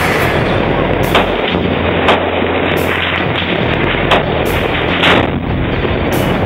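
Gunfire in a firefight: sharp, loud shots about once a second, five in a row, over a steady rumble.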